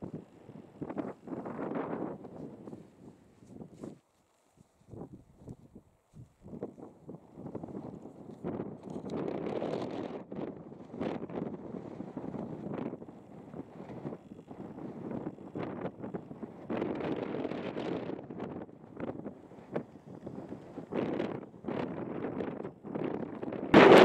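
Strong wind buffeting the camera microphone in irregular gusts, with a few abrupt dropouts early on.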